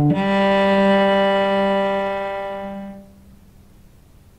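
Solo cello bowing the final long note of an exercise: a G held after a step up from a D, fading away about three seconds in.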